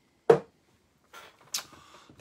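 A drinking glass set down on a hard surface, giving one sharp knock a fraction of a second in, followed near the end by softer rustling and shuffling of a person moving.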